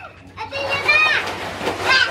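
Children playing in an inflatable pool: a child's long, high-pitched shout rises and falls over water splashing, with another short call near the end.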